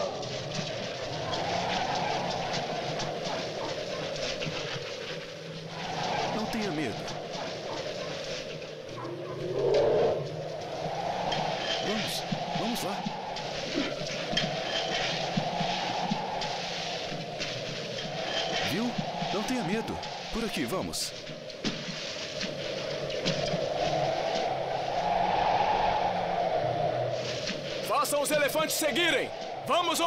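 Howling blizzard wind rising and falling in long gusts, with indistinct men's voices under it and shouting near the end.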